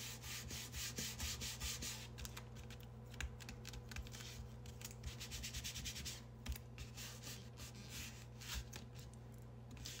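Fingers and palms rubbing firmly over the back of a styrofoam printing plate laid face down on paper, pressing the paint onto it: faint scratchy rubbing in irregular bursts.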